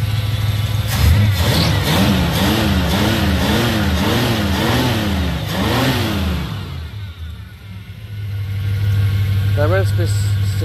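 1967 Dodge Coronet V8 being blipped by hand at the throttle, revving up and dropping back about twice a second for some five seconds before settling back to idle. It revs cleanly, and the owner says the miss, like a dead cylinder, no longer seems to be there.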